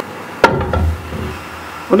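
A large aluminium cooking pot set down onto a gas stove's grate: one sharp metallic knock about half a second in, with a short ring, followed by a low rumble.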